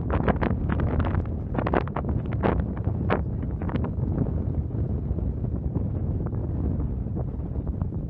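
Wind buffeting the camera's microphone on an exposed mountain summit: a steady low rumble, with short crackles in the first half that thin out later.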